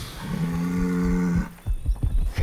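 A cow mooing once, a flat, low call of about a second.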